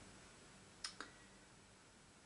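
Near silence: room tone, broken by two faint short clicks in quick succession about a second in.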